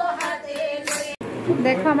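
Women singing a Manasa kirtan together, with sharp percussive strokes about every 0.7 s keeping time. The singing breaks off abruptly a little past halfway, and a woman's talking follows.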